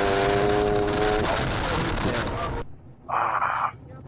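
Car horn sounding one steady, unbroken tone over dashcam road and wind noise as a car spins out ahead, ending about a second in. The road noise cuts off suddenly near the end, followed by a brief burst of noise.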